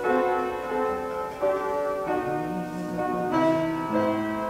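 Slow piano music, held chords and melody notes changing every half second to a second.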